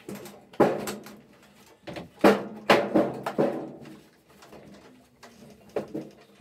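A washing machine being shoved and tipped along a hallway floor: a series of heavy knocks and bumps, the loudest pair a little over two seconds and about three seconds in.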